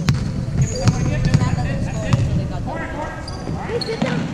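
A basketball bouncing on a hardwood gym floor as it is dribbled up the court, a few sharp, irregularly spaced bounces. Sneakers squeak briefly on the floor, and players and spectators call out in the gym.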